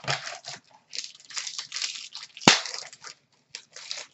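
Plastic wrapper of a hockey card pack crinkling and tearing as it is ripped open by hand, an irregular crackle with one sharp snap about two and a half seconds in.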